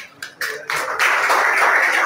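A small group clapping in a small room: a few separate claps, then steady applause from about half a second in.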